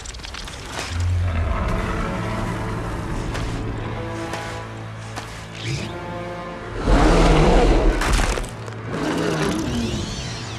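Film score music with a held low note, mixed with monster-fight sound effects; a loud, low-heavy hit lasting about a second comes about seven seconds in.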